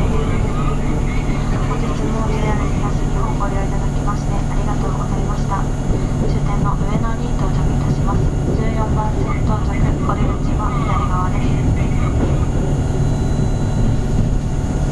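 Interior running noise of a JR 651-series limited express electric train pulling into a station platform: a steady low hum with wheel and rolling noise. Indistinct voices can be heard over it.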